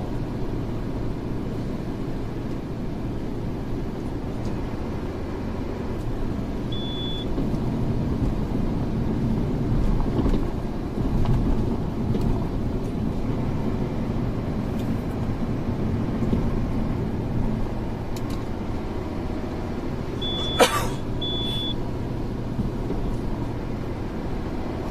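Steady road and engine noise heard from inside a car cruising on an expressway. A short high beep sounds about seven seconds in, and a sharp click with two more short beeps comes near the end.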